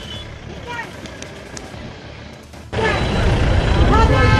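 Busy street noise with people's voices and traffic. About two and a half seconds in it cuts abruptly to much louder crowd noise with a heavy low rumble and raised voices.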